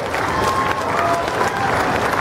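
Spectators in the stands applauding, with scattered voices in the crowd, at the end of a demolition derby heat.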